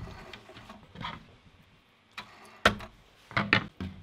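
Soft rustling of fabric being handled, then a sharp click about two and a half seconds in and two quicker knocks shortly after.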